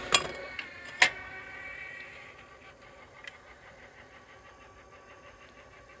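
Atlas AT-150 wobble clay trap's electric motor running just after a throw, a whine that fades away over the first couple of seconds, with a sharp click near the start and another about a second in.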